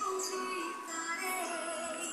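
Worship music with a woman singing held notes that waver in pitch.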